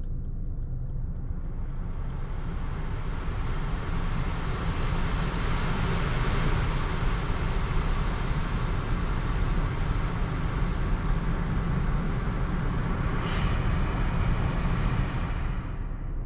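Cabin noise of a Subaru Forester e-BOXER hybrid on the move: a steady low rumble with a hiss of wind and tyre noise that builds over the first couple of seconds and stops suddenly near the end.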